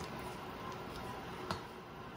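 Faint handling noise from the removed radio dial scale held in gloved hands over low room tone, with a single small click about one and a half seconds in.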